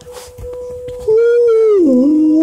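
A dog howling: a long, loud note starts about halfway through, holds steady, then slides down in pitch near the end and carries on at the lower pitch.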